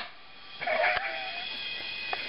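A person's short, wavering, high-pitched vocal sound about half a second in, with a click near the middle, over a faint steady high whine.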